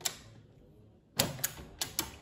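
Window lever handle and latch being worked by hand: a single click at the start, then a quick run of three or four sharp clicks and clunks in the second half.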